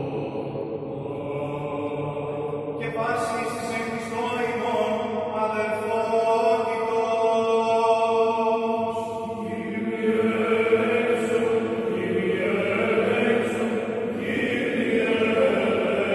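Greek Orthodox Byzantine chant: voices hold long, slowly moving notes over a steady sustained drone note. The singing swells in loudness toward the middle.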